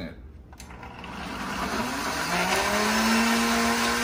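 Countertop blender puréeing cooked tomatoes with onion, chipotle peppers and garlic. The motor starts about half a second in, its whine rising in pitch as it spins up, then runs steadily at one pitch.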